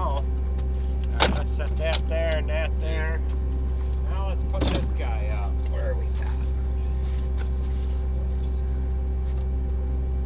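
Engine running steadily with a low, even drone, with voices over it in the first half and a sharp metallic knock about a second in and another smaller clank near the middle.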